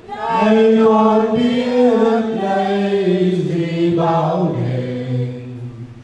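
Ceremonial chanting through a microphone: long held notes, each phrase sliding down in pitch, with short breaks between phrases.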